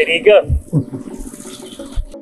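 A man laughing and calling out "hey", followed by a few low, dull thumps.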